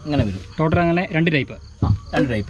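A man talking, with brief pauses, untranscribed speech most likely in Malayalam.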